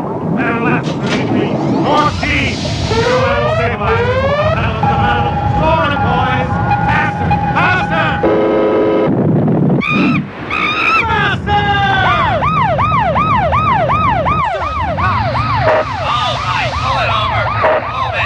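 Submarine sound effects: electronic rising sweeps, beeps and held tones over a low rumble, then, past the middle, a fast repeating whooping alarm at about two whoops a second.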